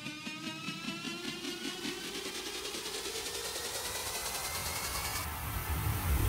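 Electronic dance music build-up: a slowly rising synth tone over a fast, even pulse, growing steadily louder.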